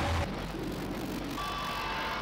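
Sound design of an animated logo sting: a steady rushing noise, with faint held tones coming in about one and a half seconds in.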